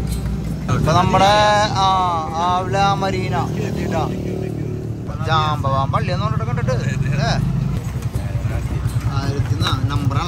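Small motorcycle engine of a mototaxi (motorcycle rickshaw) running under way, a steady low drone that turns to a quick pulsing chug in the last couple of seconds. A voice, sung or spoken, comes over it twice.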